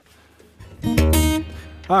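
An acoustic guitar chord strummed once about a second in, left to ring and fade.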